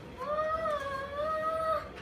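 A high voice holds one long wordless note for about a second and a half, dipping slightly in pitch in the middle.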